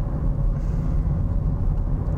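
Steady low rumble of a moving car, heard inside the cabin: engine and road noise while driving.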